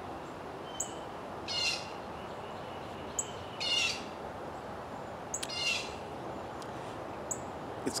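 A songbird singing short, rapid phrases about every two seconds, with a few brief high chirps between them, over a steady hush of outdoor background noise.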